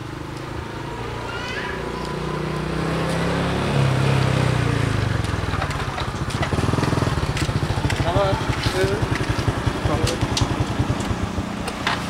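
Small Honda motorcycle engine approaching and getting louder, then running slowly with an even, rapid putter as the bike pulls up.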